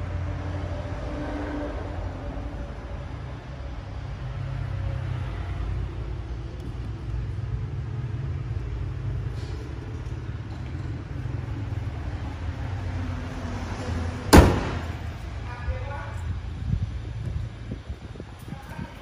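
Hyundai Accent 1.4 four-cylinder petrol engine idling with a steady low rumble. A single loud slam about fourteen seconds in, the bonnet being shut.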